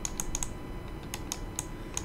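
Light computer keyboard typing: irregular, faint clicks, a few each second.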